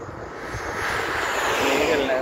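A car passing close by on the road, its tyre and engine rush swelling steadily to a peak near the end.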